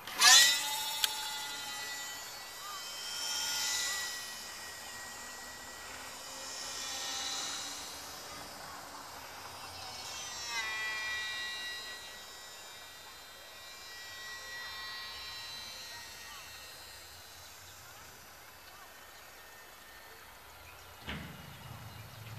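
Twin micro electric motors and propellers of a supercapacitor-powered free-flight foam model plane whining in flight. The whine is loudest in a close pass just after launch, then swells and fades every few seconds as the plane circles, growing gradually fainter.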